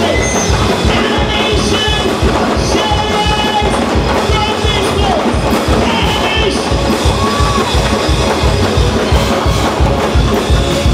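Live gospel praise-break music: drums and bass drive a fast, steady beat, with congregation voices calling out over it.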